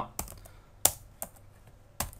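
A few separate keystrokes on a computer keyboard as code is typed, the sharpest about a second in.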